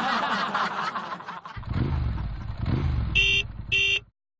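End-card sound effect: a noisy rush, then a motor scooter engine revving twice, ending with two short beeps of a scooter horn.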